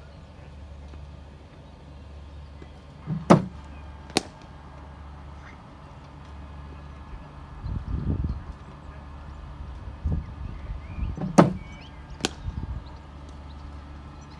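Two deliveries from a cricket bowling machine, about eight seconds apart: each is a sharp crack as the ball is fired, followed under a second later by a second sharp knock at the batting end. A steady low hum runs underneath.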